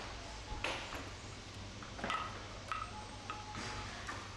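About five sharp clinks, each with a brief metallic or glassy ring, the loudest about half a second in, over a low steady hum.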